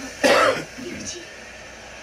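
A man gives one short, loud throat-clearing cough just after the start, followed by faint voices.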